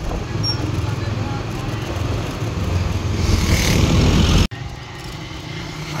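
Ride noise from a moving motorcycle: a low engine and road rumble mixed with wind buffeting on the microphone, growing louder, then cut off abruptly about four and a half seconds in. After the cut comes quieter, steady street ambience.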